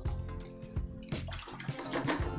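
Water sloshing and splashing in a bucket as a paintbrush is rinsed, in irregular spurts, over quiet background music.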